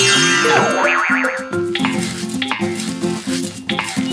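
Bouncy cartoon background music with a repeating bass line and light percussion. In the first second a wavering, up-and-down whistling sound effect of a magic wand casting a sparkling spell.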